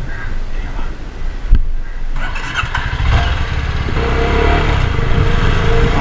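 CFMoto 250NK motorcycle's single-cylinder engine running as the bike pulls away and gathers speed, growing louder over the last few seconds. A sharp thump about a second and a half in.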